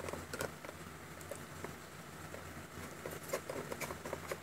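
Faint scattered clicks and light taps of a hand handling a plastic cosmetics jar and its lid, a few more near the end, over a steady low hum.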